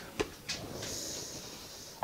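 Two light clicks of the blender jar being handled, then a long sniff of about a second as the fresh garlic-lemon aioli in the jar is smelled.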